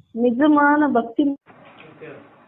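A woman's voice speaking with a drawn-out, held syllable for about a second, then a faint hiss.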